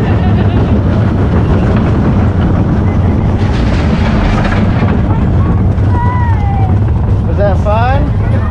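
Wind buffeting the microphone over the steady rumble of a small roller coaster car running along its track. There is a short rising squeal of a voice near the end.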